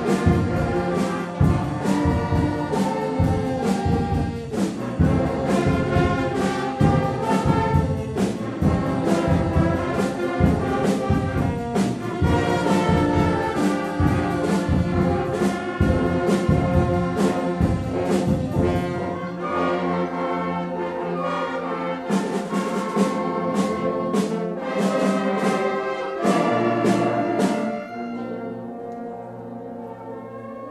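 School concert band of brass, woodwinds and percussion playing a piece, with percussion strikes keeping a steady beat under the brass. About two-thirds of the way through, the bass and heavy percussion drop out for a lighter passage, and near the end the band falls back to softer held notes.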